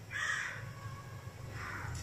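Crow cawing twice, about a second and a half apart.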